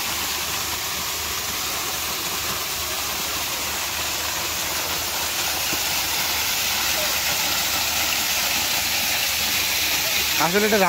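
Artificial rock waterfall pouring into a pond: a steady rush of falling, splashing water, a little louder in the second half.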